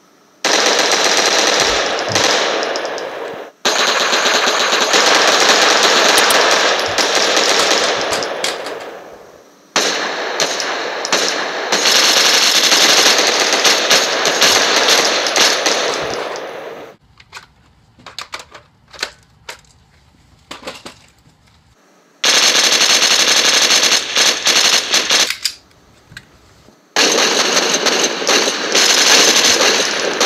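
Automatic gunfire in long continuous bursts: three bursts of several seconds each through the first half, the last one fading out. A few seconds of scattered sharp clicks follow, then two more bursts of about three seconds each near the end.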